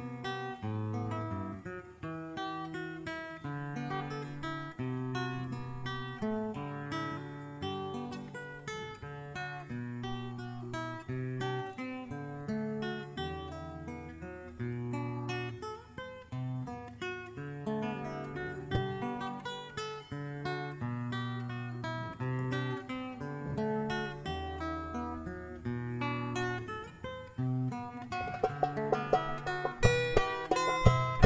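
Live acoustic guitar music, plucked and strummed, over low bass notes that hold for a few seconds at a time. Near the end it grows louder and busier, with sharp accented strokes.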